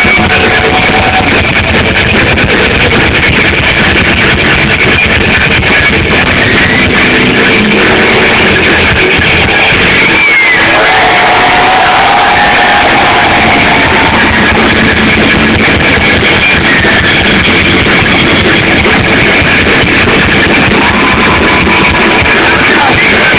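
A rock band playing live, with electric guitars and drums, recorded very loud and dull with almost no treble. The music thins out briefly about halfway through.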